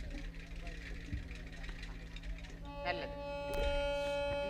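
A steady low electrical hum from the stage sound system. About two-thirds of the way in, a harmonium comes in with a held note, and a single click follows shortly after.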